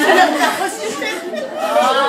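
Several people talking over one another: lively overlapping chatter.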